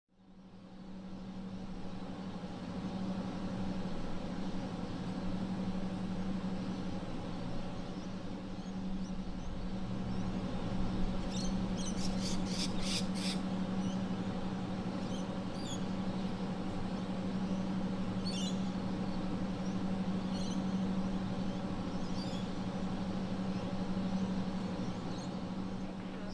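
Stationary Comeng electric multiple unit idling at a platform, its onboard equipment giving a steady low hum, with birds chirping over it and a quick run of sharp high chirps about halfway through. The sound fades in during the first second.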